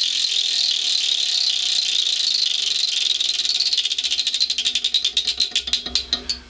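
Antique carnival gambling wheel spinning down, its pointer clicking against the pegs on the rim: a rapid rattle of clicks that slows into separate, wider-spaced clicks and stops near the end as the wheel comes to rest.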